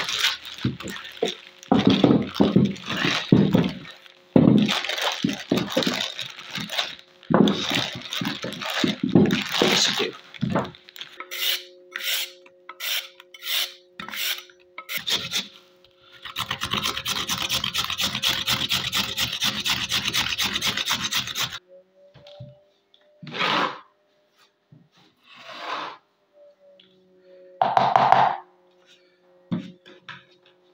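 Carrot rasped on a small handheld metal grater: separate strokes about two a second, then about five seconds of fast, continuous grating. Before this come irregular rustling and handling sounds, and after it only a few scattered knocks.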